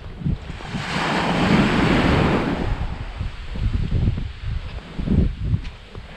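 Small sea waves crashing and washing up a sandy beach, with a broad rush that swells about a second in and fades by about three seconds. Gusts of wind buffet the microphone throughout.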